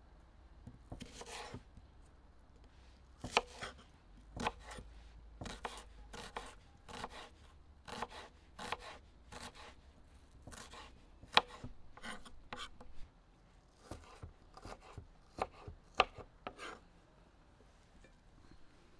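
Kitchen knife slicing an onion on a wooden cutting board: irregular sharp knocks of the blade striking the board, about one or two a second, some much louder than others.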